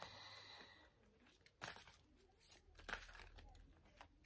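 Faint rustling of a Lenormand card deck being shuffled by hand, with a few soft flicks as the cards are slid and squared.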